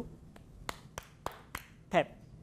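About five sharp taps, roughly three a second, as a hand knocks the back of an upturned sauce bottle. The knocks apply force to get thick sauce to start flowing.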